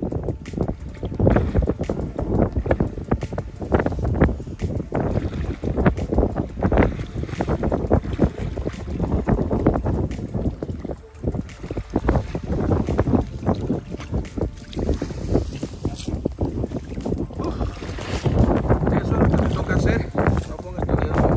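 Strong wind buffeting the microphone in irregular gusts, over water lapping and splashing as a person moves about in the water.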